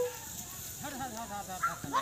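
Several people shouting and calling in the distance, a scatter of short, rising and falling calls.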